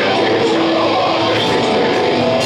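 Black metal band playing live at full volume: distorted electric guitars carry a melody of held notes over a dense wall of sound.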